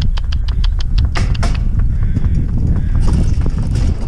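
Pony's hooves clip-clopping in a quick, even rhythm, sharpest over the first second and a half, with the steady low rumble of the cart rolling over a gravel track underneath.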